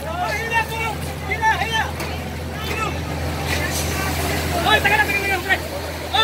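Several people's voices calling out and talking over a steady low engine drone.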